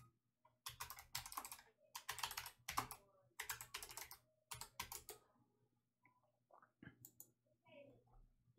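Typing on a computer keyboard: several short runs of quick keystrokes over the first five seconds, then only a few faint clicks.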